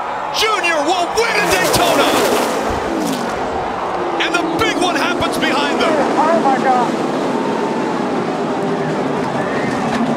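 A pack of NASCAR stock cars' V8 engines running at race speed, their pitch falling as the cars pass, under crowd noise and excited voices; a steadier engine drone fills the second half.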